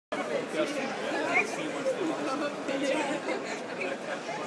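Indistinct chatter of several people talking at once, a steady background babble of voices.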